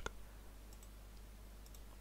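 A few faint computer mouse clicks over quiet room tone, around a second in and again near the end.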